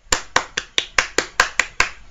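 One person clapping their hands about nine times at an even pace, about five claps a second: mock applause.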